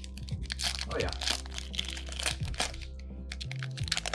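Foil wrapper of a Yu-Gi-Oh! booster pack crinkling and crackling as it is torn open by hand and the cards are pulled out.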